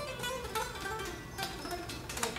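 Electric guitar's fretted neck played quietly, a string of picked single notes with a thin, plucky sound.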